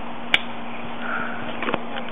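Plastic harness buckle of a child bike seat snapping shut with one sharp click about a third of a second in, followed by a few softer clicks and rattles of the straps near the end.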